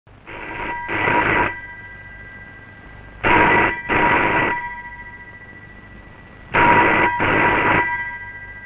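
Telephone bell ringing in a double-ring cadence: three pairs of rings, each pair about three seconds after the last.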